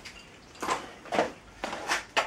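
A hand ratchet being set on the engine's crankshaft nut: about four short, sharp metallic clicks and knocks, roughly half a second apart.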